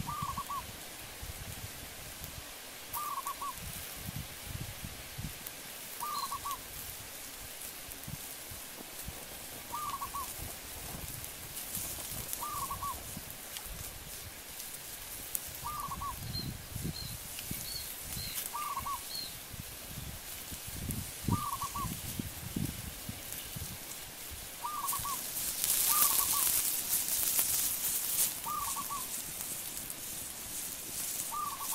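A bird repeating a short two- or three-note call about every three seconds, with a few faint, higher chirps from another bird partway through. A loud hiss rises near the end and lasts about three seconds.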